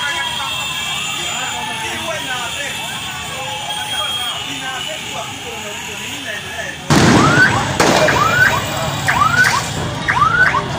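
Busy street hubbub of many voices and motorcycle traffic. About seven seconds in, the sound jumps to a much louder, noisy scene with an electronic alarm whooping up in pitch, repeating a little under twice a second.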